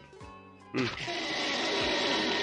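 Cartoon sound effect for a railway rail being hauled out of line by a rope tied around it: after a soft, quiet start, a loud, steady hiss sets in suddenly about three-quarters of a second in and keeps going.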